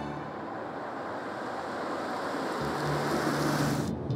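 City street traffic ambience: a steady rush of passing cars, with a low hum joining about two and a half seconds in.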